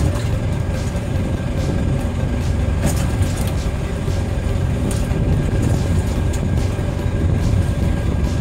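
A fishing boat's engine idling with a steady low rumble, with a couple of faint clicks about three and five seconds in.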